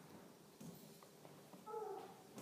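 Near silence: room tone between spoken phrases, with a faint short pitched sound near the end.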